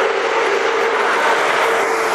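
Street traffic: a motor vehicle running close by with a steady engine whine over a loud rush of road noise.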